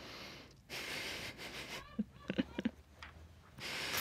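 Hissing, strained breaths in and out, with a few short squeaky vocal sounds about two seconds in: a person reacting to the burning sourness of a Warheads candy in the mouth.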